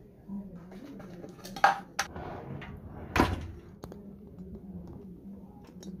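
Pigeons cooing repeatedly, with a few sharp knocks about two seconds in and a louder clattering knock about three seconds in.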